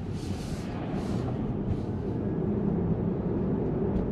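Steady road and tyre noise heard inside the cabin of a Tesla electric car driving along, with no engine sound.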